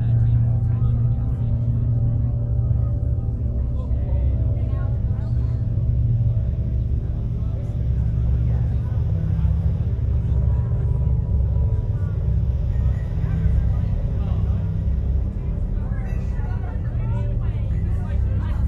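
Indistinct voices over background music, with a heavy steady low hum beneath.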